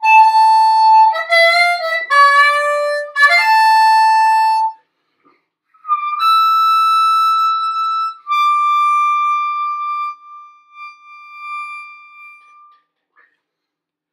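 Harmonica played in its high register, cupped into a Silverfish Dynamic Medium Z harmonica microphone. A held note opens into a short phrase of bent notes, then after a pause come two long held high notes, the last one wavering as it fades near the end.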